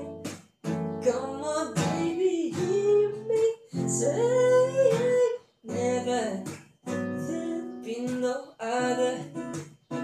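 A man singing with his own strummed acoustic guitar, in phrases with brief pauses between them.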